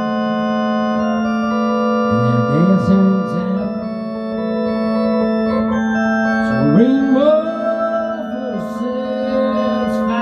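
Electronic organ playing held chords in a ballpark-organ style, with a few notes that slide up in pitch about a quarter of the way in and again about two-thirds through.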